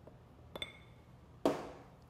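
A glass mason jar gives a light clink with a brief ring about half a second in. Then comes a louder knock as a small pepper container is set down on the table.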